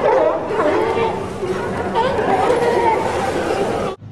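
A large group of sea lions barking and honking over one another, dense and continuous, cutting off abruptly at the end.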